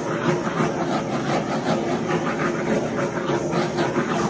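Handheld gas torch burning with a steady rush of flame, played over wet epoxy resin to pop the bubbles in the fresh coat.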